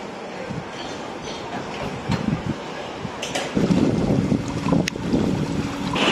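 Wind on the microphone with small waves breaking on a sandy shore, the rush of surf growing louder a little past halfway.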